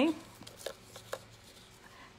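A few light clicks and taps, about half a second apart, as hardened isomalt butterfly wing pieces are handled on a cardboard cake board.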